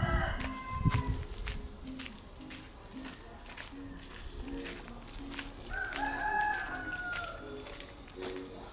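A rooster crowing: one long crow about six seconds in, with the end of another crow in the first second. Footsteps and faint music sit underneath.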